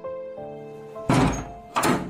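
Wooden door being unlocked and opened by hand: two loud thunks from the latch and handle, about a second in and again near the end, over soft background music.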